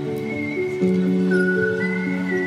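Background music: sustained chords with a high, slightly wavering lead line that enters a short way in, the chord changing and growing louder near the middle.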